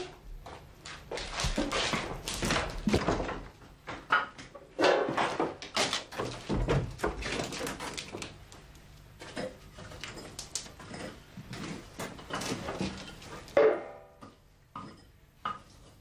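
A woman sobbing in irregular gasps and whimpers, with a few knocks.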